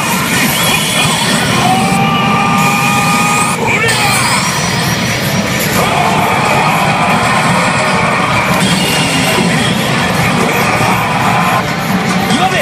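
Loud soundtrack music and electronic effect sounds from a Hana no Keiji pachinko machine's speakers during a presentation, with a swooping rising effect about four seconds in and massed shouting mixed in.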